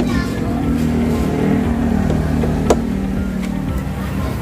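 Plastic tail-light housing clicking into place once, sharply, a little past halfway, over a steady low hum and background music.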